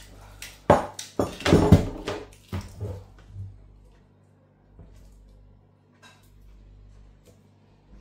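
Battery charger and its metal alligator clamps clattering and knocking as they are handled and set down on a wooden bench, a quick run of knocks in the first half, loudest around a second and a half in. Then faint rustling and ticking as the mains cable and plug are handled.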